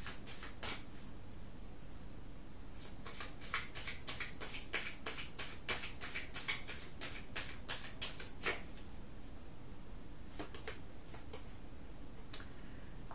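A tarot deck being shuffled by hand: a run of quick card strokes, about four a second, from about three seconds in to about eight and a half, with a few more strokes at the start and near the end.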